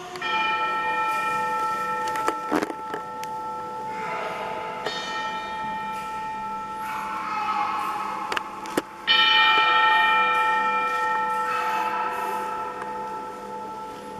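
Church bells struck about six times, each ring holding several steady tones for a few seconds; the loudest ring comes about nine seconds in. A few short clicks fall between the rings.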